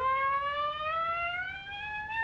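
Solo clarinet playing alone in a long, slow upward glissando, sliding smoothly nearly an octave in one breath.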